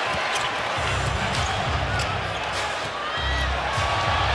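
Basketball game sound: a basketball bouncing on the hardwood court a few times, with a steady crowd murmur in the arena.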